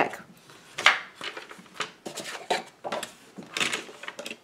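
A wooden box lid with metal hinge hardware (mending plates and wing nuts) being handled and moved, making an irregular string of light knocks, clicks and rubs.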